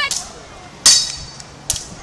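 Sword blows landing on armour in a sparring bout: one sharp strike with a brief metallic ring about a second in, and a lighter knock near the end.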